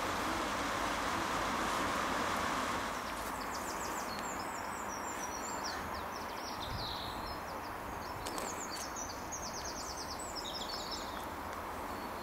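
Small songbird singing rapid, high twittering phrases in two bouts from about three seconds in, over a steady outdoor rushing noise.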